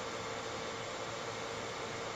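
Quiet, steady background hiss with a faint hum: the room tone of a video-call recording in a pause between speakers.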